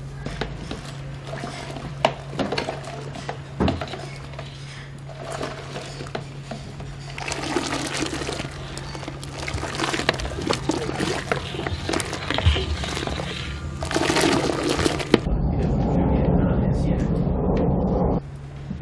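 Liquid being poured slowly from a bowl into a large steel pot of salep, over a steady low hum, with a louder low rumble over the last few seconds.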